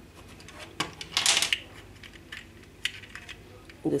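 Small plastic clicks and a short scraping rattle as the sections of a plastic zigzag pencil magic box are handled and the pencil pieces are pulled out. One sharp click comes a little under a second in, the scrape just after, then a few lighter clicks.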